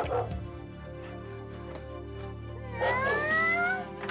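A single meow, rising in pitch and lasting about a second, about three seconds in, over soft background music.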